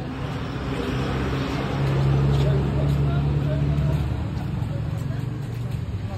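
A motor vehicle passing close by on the street, its low engine hum growing louder over the first two seconds and fading after about four, with voices in the background.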